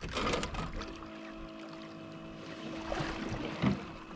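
Power-Pole shallow-water anchor on a boat's stern retracting: its electro-hydraulic pump gives a steady hum for about three seconds, then stops as the pole folds up out of the water.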